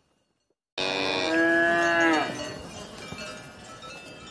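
A cow moos once, one long call beginning suddenly about a second in, holding a steady pitch and then falling away at its end.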